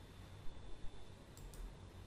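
A computer mouse clicking a few times: short quiet clicks in the first half and a close pair of sharper clicks about a second and a half in.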